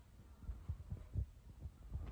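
Handling noise from a phone held in the hand: about six soft, low thumps at irregular intervals over a faint steady hum.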